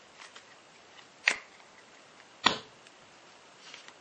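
A deck of playing cards being handled: a few faint ticks, then two sharp clicks about a second apart.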